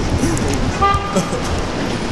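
City street traffic rumbling, with a short car horn toot about halfway through.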